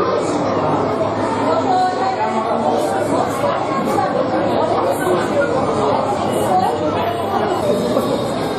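Many people talking at once: a steady hubbub of crowd chatter with no single voice standing out.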